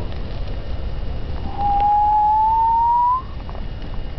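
A large couch fire burning with a steady low rumble. About one and a half seconds in, a single clear whistling tone rises slowly in pitch for about a second and a half, then stops.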